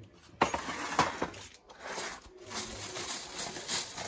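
A metal roasting tray knocks down onto a tiled worktop, twice in the first second, then aluminium foil crinkles as it is peeled back off the tray.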